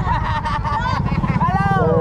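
Motorcycle engine running with a steady low rumble close to the microphone, while people call out, one voice rising and falling near the end.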